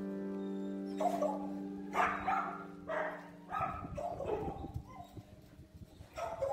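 A small puppy barking in short high yaps, about half a dozen over a few seconds, over a held music chord that fades out about halfway through.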